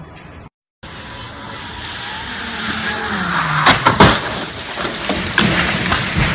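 A car on a wet road: a rising hiss of tyres through water with an engine note that falls in pitch, then a few sharp knocks or bangs around the middle. The one about four seconds in is the loudest.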